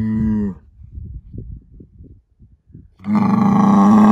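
Angus bull bellowing: a deep call that ends about half a second in, then a second, louder bellow that starts near the end.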